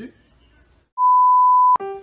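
A single steady, pure electronic beep added in editing, lasting under a second: it starts about halfway in and cuts off abruptly with a click. Before it there is only faint room tone.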